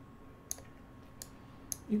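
Three short computer mouse clicks spread over about a second, made while moving pieces on an on-screen chessboard.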